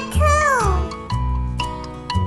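Children's song backing music with a steady bass line and keyboard notes. In the first second a high voice slides down in pitch, then stops.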